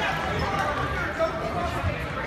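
Indistinct voices talking in a gym, with two short dull thumps, one just past the middle and one near the end.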